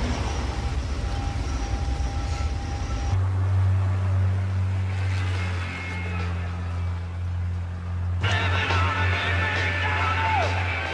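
Car running on the road, heard from inside the cabin. After about three seconds this switches to a heavy truck engine running with a steady low drone. Music with higher steady tones comes in over it about two seconds before the end.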